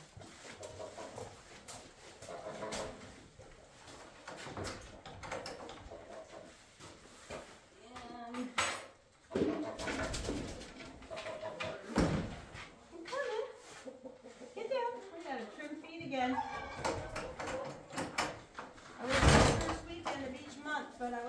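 Knocks and bangs from wooden stall doors and gates being handled in a barn, several spread through the clip and the loudest near the end.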